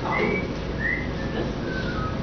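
About four short whistled notes, each a little lower than the one before, over a steady murmur of room noise.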